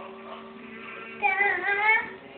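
A toddler's loud, high-pitched squeal, held for under a second near the end, its pitch wavering.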